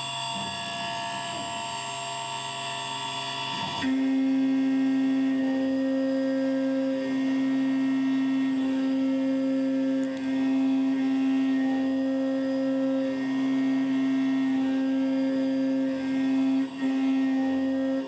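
MR-1 CNC mill with an end mill cutting an aluminium block under flood coolant: a steady whine with many overtones. About four seconds in it gets louder with a strong low tone, and a higher tone swells and fades about every two seconds as the cut goes on.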